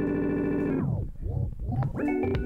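Electronic music loop recorded from a Novation Circuit Tracks, played back from a Roland SP-404 MkII sampler. About a second in, the whole loop slides down in pitch and thins out. It starts again in full at the end.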